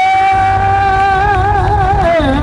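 Live electric blues band holding one long high note over bass and drums; the note wavers with vibrato from about halfway through.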